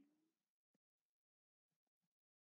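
Near silence: the recording is gated to almost nothing between phrases of speech.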